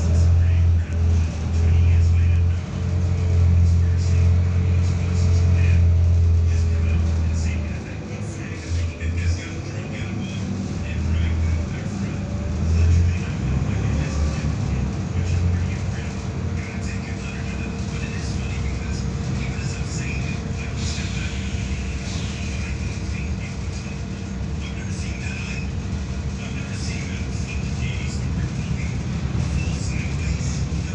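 Volvo B7RLE bus heard from inside the cabin: its rear-mounted six-cylinder diesel drones loudly under acceleration for the first several seconds, then runs more quietly at a cruise. A whine rises and falls with the engine and then holds steady, and the interior fittings rattle.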